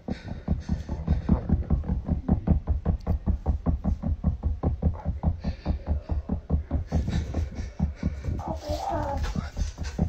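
A rapid, even run of deep thumps, about five a second, that keeps up without a break, with a short wavering higher sound near the end.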